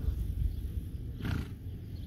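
Horse giving one short breathy snort a little over a second in, over a steady low rumble of wind on the microphone.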